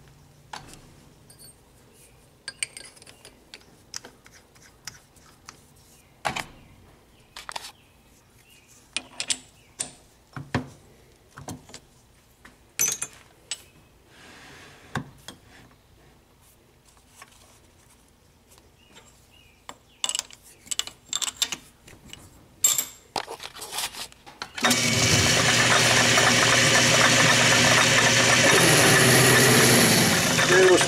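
Scattered sharp metallic clicks and clinks as a drill bit and drill chuck are handled and set up on a metal lathe. About 25 seconds in, the lathe starts and runs steadily, much louder than the clinks.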